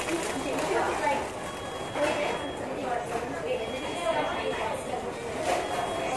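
People talking, with a paper burger wrapper crinkling as it is handled.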